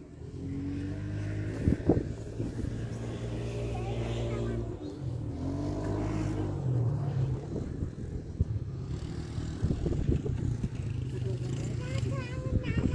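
A quad bike engine running steadily, its pitch shifting about five seconds in and again a little later as it is revved, with voices over it.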